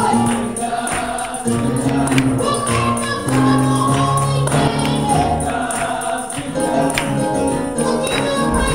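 Gospel praise team singing together in harmony, with a tambourine struck and shaken in a steady rhythm under the voices.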